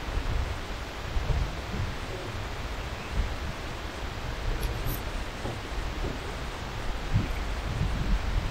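Airport concourse ambience: a steady wash of hall noise with scattered low thumps.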